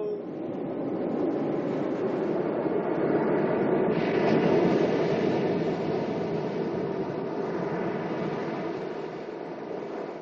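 Ocean surf washing onto a sandy beach, a steady rush of waves that swells about four seconds in and slowly fades toward the end.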